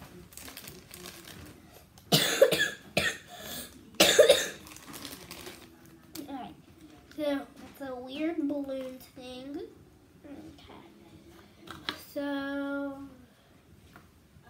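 A child coughs, a loud burst about two seconds in and another about four seconds in. Several short sliding pitched sounds follow, then a steady held tone near the end, none of them words.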